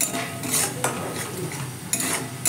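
A metal spatula stirring and scraping a thick spice paste of ground onion, tomato, ginger, garlic and coconut as it fries in oil in a metal wok: four sharp scrapes against the pan in two seconds, over a faint sizzle.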